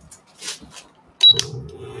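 Soft paper rustling and light handling sounds. Just over a second in, a clack and a short high beep sound from a portable induction burner under a frying pan, followed by the burner's steady low hum as it starts heating.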